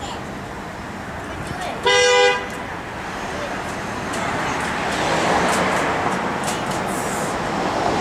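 A two-tone car horn gives one short honk about two seconds in. Street traffic noise grows louder through the second half.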